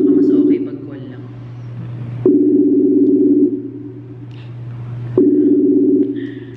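Call ringing tone from a video call: a low, steady double tone lasting about a second that sounds three times, about three seconds apart, over a constant low hum.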